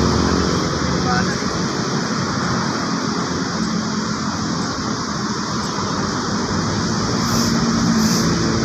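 Steady outdoor noise: a low engine hum and rumble under a constant hiss, with no single event standing out.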